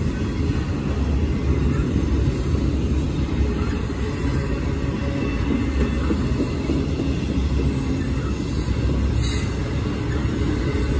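Union Pacific intermodal freight train rolling past close by, flatcars carrying highway trailers and double-stacked containers: a steady low rumble of steel wheels on rail.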